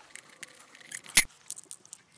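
Light clicks and rattles of small hard objects being handled, with one sharp click a little over a second in.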